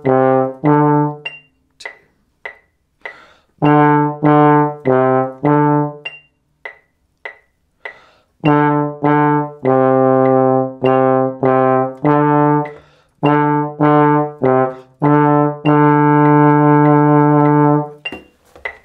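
A tenor trombone plays a beginner exercise of separately tongued quarter notes on low D and C, in groups of four. Between the groups come rests, in which faint ticks keep the beat. The phrase ends on a long held note.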